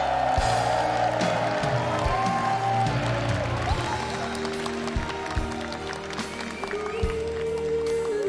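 Live ballad music from a stage band, with a large audience applauding over it.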